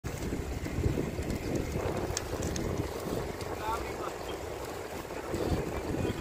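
Wind noise on the microphone of a camera moving along a road, a steady low rush that swells and dips slightly, with a few faint high chirps about three and a half seconds in.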